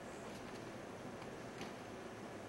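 Faint room tone, a steady low hiss and hum, with a few soft ticks.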